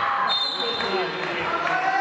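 Voices of children and spectators calling out in a large, echoing sports hall, with a ball thudding on the wooden floor. A short shrill high note sounds near the start.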